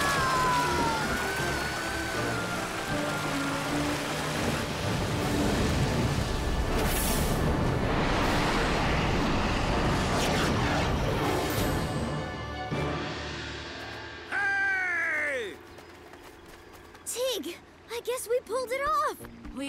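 Cartoon sound effect of a surging rush of water with a dramatic orchestral score, loud and dense for about twelve seconds before fading away. A character's short falling cry follows near the end.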